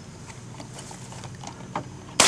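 Faint clicks and knocks of a shotgun being handled between shots, with a sharper click near the end, over a low steady hum.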